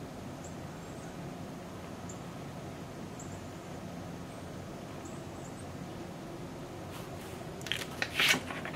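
Steady low room hum with a few faint, scattered ticks from a brush-tip marker dabbing ink onto a rubber stamp. A short rustle and clicks near the end as the wood-mounted stamp is handled.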